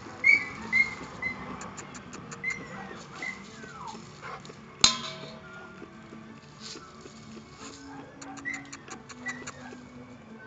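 An American Staffordshire Terrier whining in short, high whines, several in the first few seconds and again near the end. There is one sharp click about five seconds in.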